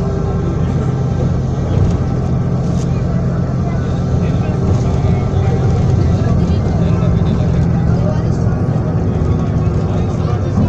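Steady drone of a moving metro bus heard from inside, with the engine's low hum running evenly.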